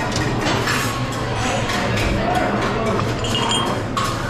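Busy breakfast-room hubbub: background chatter with crockery clinking now and then, under faint music.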